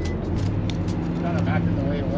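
A steady low drone of car engines idling, with faint voices over it.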